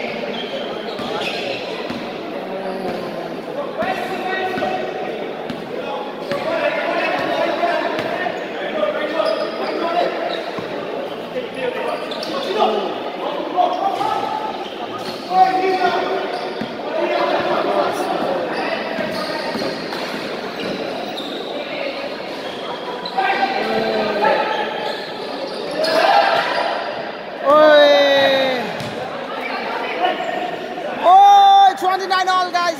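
Basketball being dribbled and bounced on a hard indoor court, the bounces echoing around a large hall, with players' and spectators' voices calling out throughout and a loud shout near the end.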